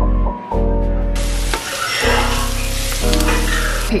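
Background music, joined about a second in by a pan of bolognese sauce sizzling as it is stirred.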